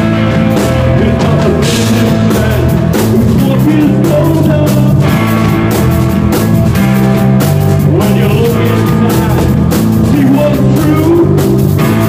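A live psychedelic rock band playing loudly: electric guitar and bass guitar over drums.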